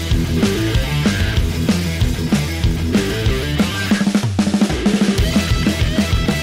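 Background rock music with a steady drum beat and bass.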